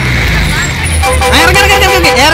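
Bus engine running with a low rumble, and from about a second in a man's voice calling out loudly over it.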